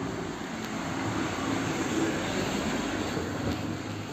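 A motor vehicle passing along the street, its engine and tyre noise swelling to a peak about halfway through and then fading.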